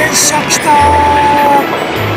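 JR Kyushu electric train passing at close range, a loud steady running noise of wheels and motors, with a single short horn note of just under a second near the middle.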